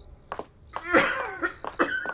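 A person coughing and clearing the throat, the loudest burst about a second in, followed by several short sharp sounds at uneven spacing.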